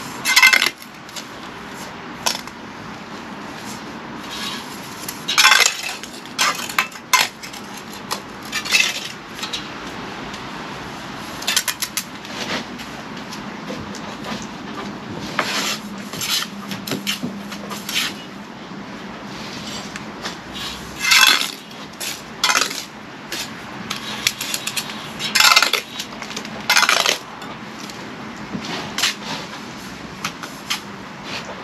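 Steel brick trowel scraping and clinking against mortar, the mortar board and bricks as a wall is laid: short, irregular metallic scrapes and taps every few seconds.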